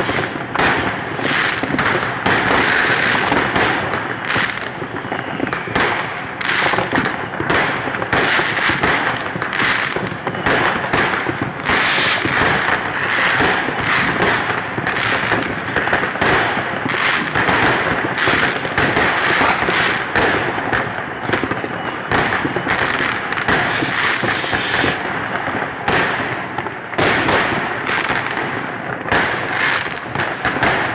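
Fireworks and firecrackers going off without pause: a dense crackle of many overlapping bangs and pops.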